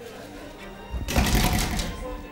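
Brass-framed double doors being pulled shut, a loud clatter about a second in that lasts just under a second.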